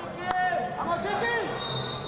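Voices shouting across a wrestling hall, with a few sharp knocks. Near the end comes a short, steady referee's whistle blast: the signal to resume wrestling.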